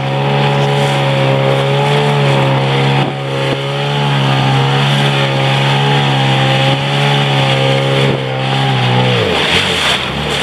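Small boat's outboard motor running at a steady high speed, with wind and rushing water over it. About nine seconds in, the motor's pitch drops as it slows.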